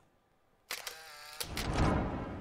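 News-broadcast transition sound effect for an animated logo wipe: a bright swoosh starts suddenly about two-thirds of a second in and swells into a deeper, louder whoosh that peaks near the end.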